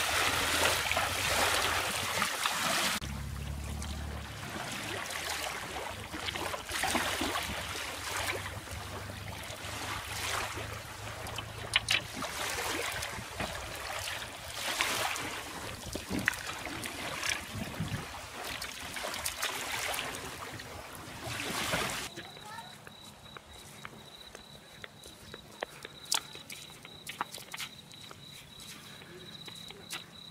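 Shallow water sloshing and splashing around wading legs and a wooden dinghy's hull as the boat is walked in and hauled onto its trailer. After about 22 seconds this gives way to insects trilling: a steady, thin, high note.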